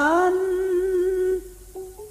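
A female singer (sindhen) in Banyumasan calung music holding a long sung note that slides up at the start and stops about one and a half seconds in. A few faint short notes follow.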